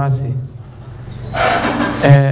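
A man's voice over a hand-held microphone and sound system, pausing for about a second with a steady low hum underneath. Near the end comes a breathy, hissing sound as he starts to speak again.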